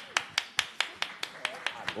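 Hand clapping in a steady, even rhythm, about five sharp claps a second.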